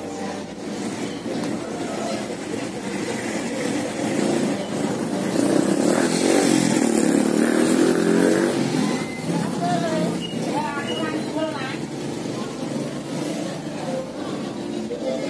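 A motorcycle passing on the street, louder from about the middle and fading again, with people talking nearby.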